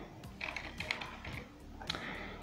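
Computer keyboard typing: a handful of separate, fairly faint keystrokes as a word is typed into a code editor.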